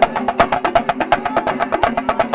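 Shinkarimelam ensemble of chenda drums beaten with sticks, many drummers playing a fast, dense rhythm loudly.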